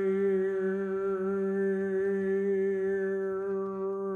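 Double bass bowed arco, sounding one long, steady, low held tone.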